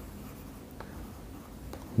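A stylus writing on a tablet: faint scratching strokes with a couple of light taps.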